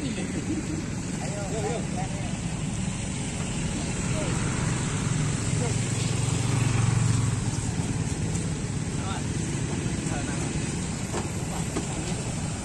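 A vehicle engine running steadily, growing louder about six seconds in and easing off again, with people's voices faintly behind it.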